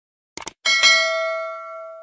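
Subscribe-button sound effect: a quick double mouse click, then a notification bell chime that rings with several clear tones, is struck again a moment later, and fades out slowly.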